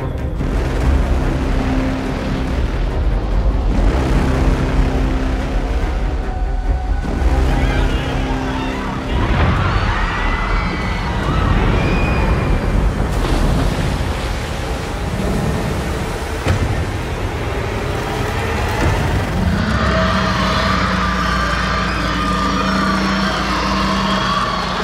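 Action-film sound mix: held orchestral score over deep booms for the first several seconds, then heavy crashing and rushing water as a river bridge is smashed and lifted. A steady held tone and denser crashing build up near the end.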